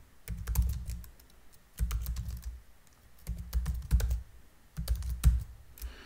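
Typing on a computer keyboard, in four short bursts of keystrokes with brief pauses between them, each burst carrying a dull low thud under the key clicks.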